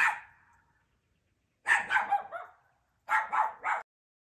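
Short, sharp animal calls in three groups: one at the start, a quick run of about three in the middle, and three quick calls near the end.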